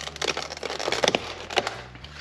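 Stiff plastic clamshell packaging being handled and pried open: a run of crackles and sharp plastic clicks.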